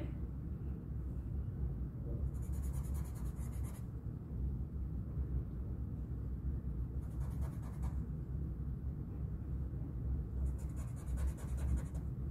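Black Sharpie marker scribbling over words on a paper index card, in three spells of quick back-and-forth strokes a few seconds apart, with a steady low hum underneath.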